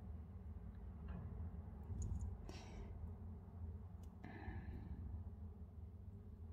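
Faint small clicks of a beading needle and glass seed beads being handled during peyote stitching, over a low steady hum, with a brief soft hiss about four seconds in.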